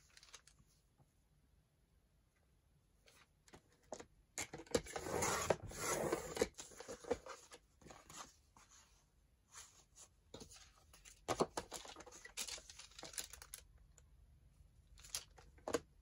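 Sliding paper trimmer's blade carriage drawn through cardstock, a noisy cut of about two seconds starting some five seconds in, followed by the cut pieces being handled, with paper rustles and light clicks and taps.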